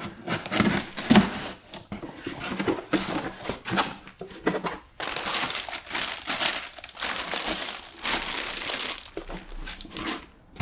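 Cardboard box being opened and its flaps handled with short scraping and rustling strokes, then from about halfway through a clear plastic bag crinkling steadily as a lacrosse head packed in it is lifted out and turned over in the hands.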